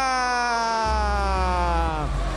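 A man's long held shout, one unbroken note that slowly falls in pitch, over a low bass thump of music.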